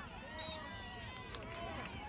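Voices of spectators and players calling out across an open soccer field, overlapping calls and chatter too distant to make out, with a few faint sharp taps near the middle.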